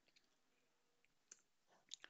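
Near silence with a few faint computer keyboard clicks, spaced irregularly, as text is deleted in a code editor.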